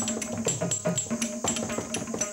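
Classical Indian dance accompaniment: a drum and small hand cymbals striking a quick, even rhythm over a steady pitched tone.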